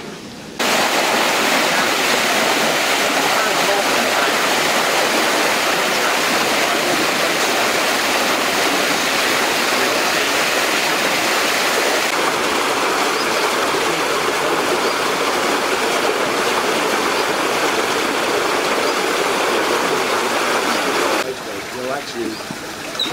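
Water pouring into a narrow canal lock chamber through the opened paddles as the lock fills, churning around the boat's bow: a loud, steady rush that starts suddenly just after the start and stops suddenly near the end.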